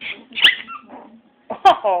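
A puppy gives one short, high yelp about half a second in, during rough play with other puppies.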